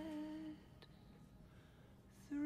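A woman's solo singing voice holds a slow, unaccompanied sustained note that ends about half a second in, followed by near silence.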